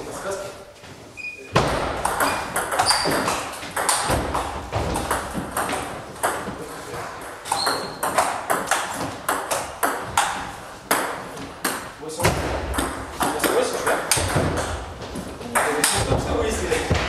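Table tennis rally: the ball clicking off rackets and the table in quick alternation, in a hall with voices in the background.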